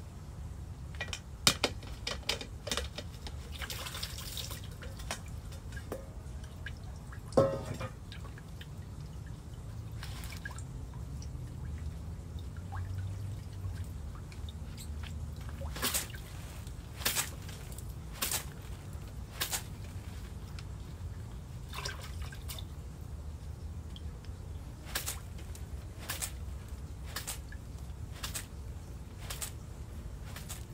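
Water dripping and splashing from freshly cut lettuce as it is rinsed and lifted out of tubs of wash water. The drips and small splashes come irregularly, some sharper than others, over a low steady background rumble.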